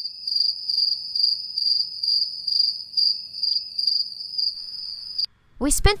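Cricket trilling, one steady high note that swells and fades about twice a second, cutting off suddenly about five seconds in. Music and a voice start just before the end.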